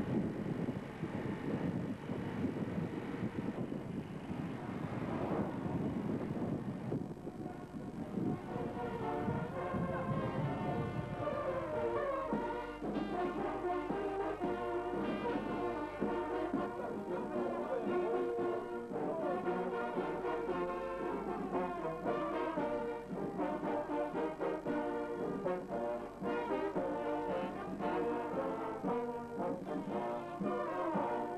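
Wind and vehicle rumble on the microphone for the first ten seconds or so, then a brass band playing, several horns sounding together.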